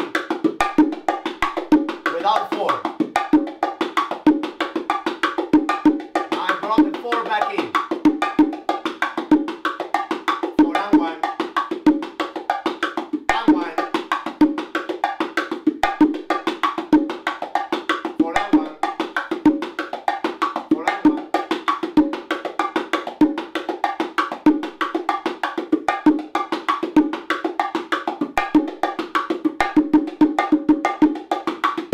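Bongo drums played by hand in a steady, fast martillo ('hammer') groove, an even stream of strokes with shifting accents between the basic pattern and its variation.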